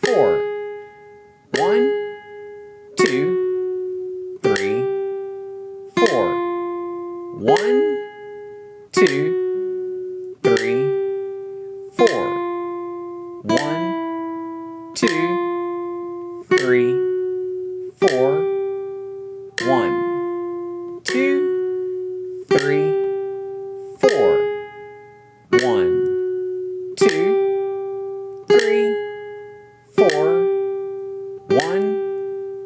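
Nylon-string classical guitar playing a slow single-note sight-reading exercise in first position, with sharps and naturals. One plucked note sounds about every second and a half, each left to ring and fade before the next, the melody moving up and down in small steps.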